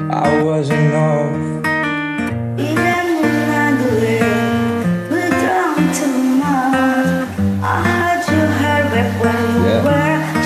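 A pop ballad sung over an acoustic guitar backing track, the voice gliding between held notes.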